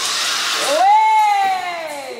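A zip-line pulley running along a steel wire rope with a hiss that fades about half a second in. Then comes one long high tone that rises and then slowly falls away.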